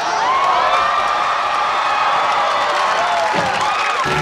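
Sitcom studio audience cheering and whooping, many voices together.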